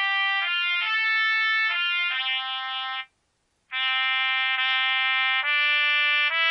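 Solo trumpet playing a slow melody of held notes, breaking off for about half a second a little after three seconds in before continuing.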